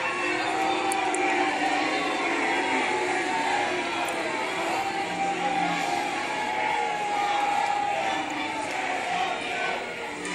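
A group of protesters chanting and shouting together in an auditorium, many voices at once with long drawn-out notes, over the noise of the crowd.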